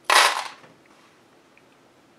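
A short metallic clatter, about half a second long, right at the start: a hand rummaging in a small metal tin of sewing clips.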